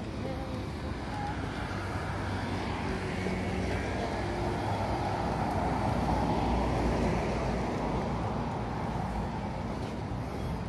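Road traffic on the street alongside: a steady wash of car noise that builds to its loudest around the middle, as a vehicle passes, and then eases off.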